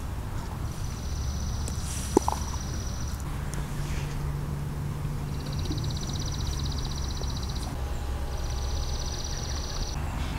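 Outdoor ambience: a high, rapid trill sounds three times, each lasting two to three seconds, over a low steady rumble, with a single sharp click about two seconds in.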